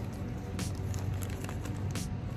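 Thin plastic zip-lock bag crinkling faintly as it is handled, a few scattered crackles over a steady low hum.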